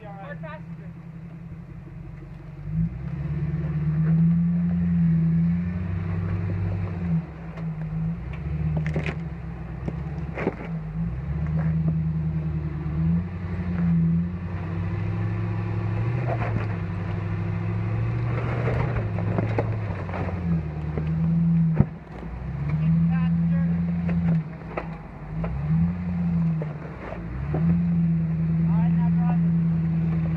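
Jeep Grand Cherokee engine working under load as the 4x4 crawls up a steep rocky climb. The engine picks up about three seconds in, and its revs then rise and fall repeatedly. A few sharp knocks stand out, the loudest about two-thirds of the way through.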